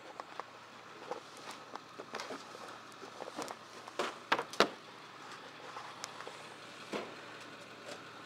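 Handling noise from a handheld camera being fumbled and carried, with footsteps: irregular clicks and knocks, the loudest pair a little after four seconds in.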